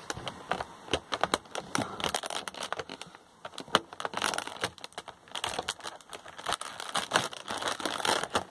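Clear plastic packaging crinkling and clicking as it is handled, a run of irregular crackles with one sharper click a little before halfway.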